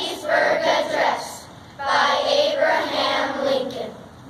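A group of children singing together in unison, two phrases with a short breath between them.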